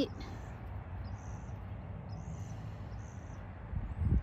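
Quiet outdoor background: a steady low rumble with four faint, short, high-pitched chirps about a second apart. A low thump comes near the end.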